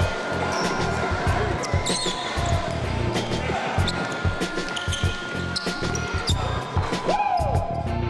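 Basketball game sound in an echoing sports hall: the ball bouncing repeatedly on the court among irregular knocks and players' voices, under background music.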